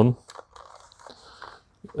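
Faint rustling and handling of a plastic electric tyre pump in the hands, with a couple of small clicks. The pump's motor is not running.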